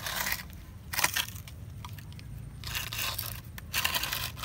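Dry bare roots and woody trunks of an uprooted, bare-root tree crunching and scraping as a hand grips and shifts it on concrete, in four short bursts.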